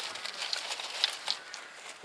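A small, freshly lit kindling fire of birch bark and feather sticks, with a few faint, separate crackles and ticks as dry twigs burn and are laid on it by hand.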